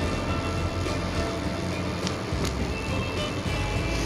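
Steady wind and rolling rumble on the microphone of a bicycle-mounted camera riding along a paved path, with music of held notes playing over it.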